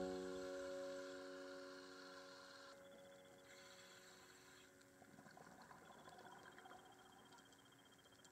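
Background piano music: a last chord rings on and slowly fades away into near silence.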